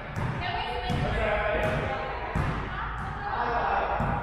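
Voices talking in an echoing gymnasium, with sharp knocks repeating about every three-quarters of a second.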